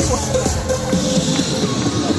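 Electronic dance music with a heavy, steady bass line playing.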